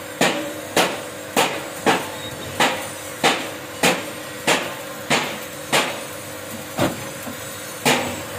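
Steady hammer blows on iron, about one and a half strikes a second, each with a short ringing decay, over a faint steady hum.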